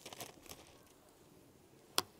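Near silence: faint background with a few soft ticks at first, and one sharp click right at the end.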